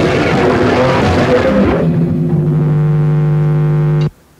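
Lo-fi experimental jazz-punk improvisation: a dense, noisy clash of instruments. About halfway through it gives way to a single held low note with rich overtones that stays steady.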